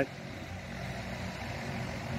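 Steady low hum of an engine running at a constant speed.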